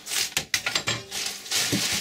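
Thin plastic carrier bag rustling and crinkling as hands rummage inside it, with a few sharp clicks and knocks.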